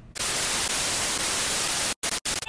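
Television static sound effect: a loud, even hiss of white noise that starts just after the beginning and cuts off suddenly near the end.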